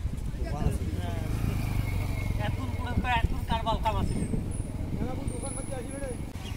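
People's voices talking over a low, steady motor hum that is strongest through the middle seconds and then fades.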